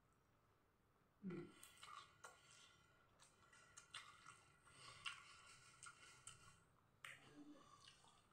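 Faint close-up mouth sounds of a person eating noodles: slurping and chewing, a run of short wet clicks starting about a second in, with a short break and a further burst near the end.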